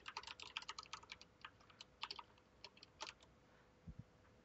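Faint computer keyboard typing: a quick run of keystrokes that thins out after about two seconds, a short flurry around three seconds in, and a soft thump just before the end.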